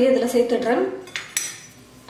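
Dry rice rava (rice semolina) poured from a steel cup into a hot nonstick kadai, with the grains hissing as they land and two light metallic clinks about a second in.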